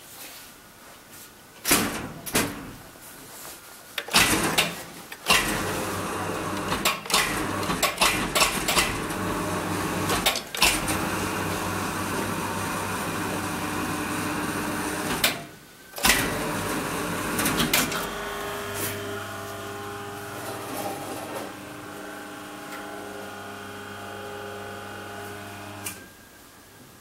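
1984 Geijer-Hissi platform lift (an imported Hiro Lift) operated from its control buttons. A few knocks and clicks come first, then the drive runs with a steady hum for about ten seconds, stops briefly with a click, and runs again with a quieter steady hum until it stops just before the end.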